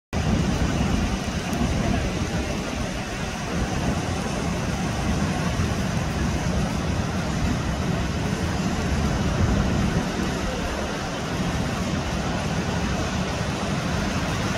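Ocean surf breaking on a rocky shore: a steady rumbling wash of waves with no distinct single events.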